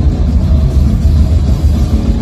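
Drum kit played live with a rock band, loud, with a heavy low rumble dominating the mix.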